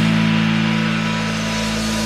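Rock band recording: a held chord rings on with no drum hits and slowly fades.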